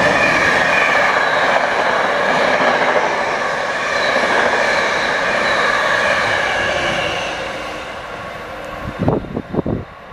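An NJ Transit passenger train of Comet V cars passing close at speed: a steady loud roar of wheels on rail with a high ringing whine. It fades from about seven seconds in as the train recedes, and a few low thumps come near the end.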